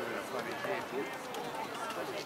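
Several voices calling and shouting, words not clear, during a junior rugby league match: spectators and players on the sideline and field.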